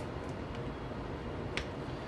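Small plastic clicks and handling noise of a USB cable plug being pushed into a webcam's mini USB socket, one sharp click about one and a half seconds in, over faint room hum.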